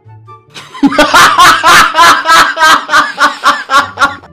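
A man laughing loudly and heartily in a fast, even run of 'ha-ha' bursts, about five a second. It starts about a second in and breaks off at the end, with faint background music underneath.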